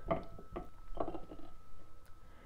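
Silicone spatula stirring and scraping a thickening, pudding-like mix of stearic acid and grapeseed oil around a glass bowl, in irregular short strokes.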